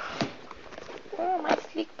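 A woman's short wordless vocal sound, a hum whose pitch rises and falls, about a second in, over light clicks and knocks from items being shifted in a search through stacked containers.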